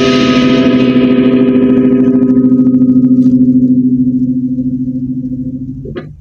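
LTD AX-50 electric guitar played through a Quake GA-30R amplifier's own distortion, with no effect pedal in the chain: a held distorted chord rings on and slowly fades out.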